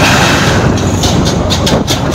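Road and wind noise from a moving two-wheeler, with a quick run of clanks in the second half as the wheels cross the steel plates on a bridge deck.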